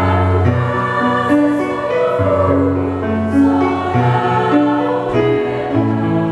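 Choir singing a Japanese song in parts, accompanied by an electronic keyboard, with held notes over a bass line that steps every second or so.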